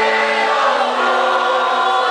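A live pop song sung by several voices together over the music, loud and steady.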